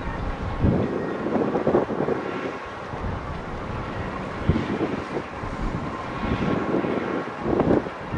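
Wind buffeting the microphone in irregular gusts, over a steady background rumble.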